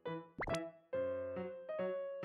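Light, cheerful keyboard background music playing in short notes, with a quick upward-sweeping pop sound effect about half a second in.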